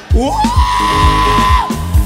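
Live gospel band music with a steady kick drum and bass; after a brief dip, a long high note slides up and is held for about a second and a half.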